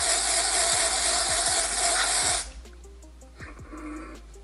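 Aerosol can of Batiste tinted dry shampoo spraying onto the scalp in one steady hiss of about two and a half seconds, which cuts off sharply.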